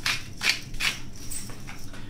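Hand pepper mill being twisted over a pot, grinding pepper in about three short rasping strokes in the first second, with fainter handling sounds after.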